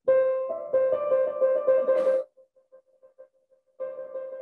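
Grand piano trill: two neighbouring notes in the middle register alternate rapidly and evenly for about two seconds, driven by arm rotation with a loose wrist rather than by the fingers. It breaks off, and a new note sounds near the end.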